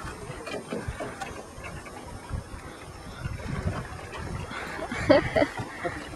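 Wind rumbling irregularly on the microphone over open water, with a brief vocal sound about five seconds in.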